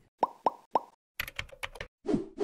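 Sound effects of an animated logo sting: three quick pops about a quarter second apart, then a rapid patter of short clicks.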